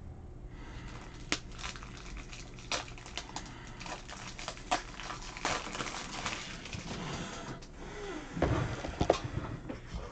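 Handling noises of cards and rigid plastic top loaders: a run of light rustles and clicks, with a few louder knocks and a short squeak about eight seconds in.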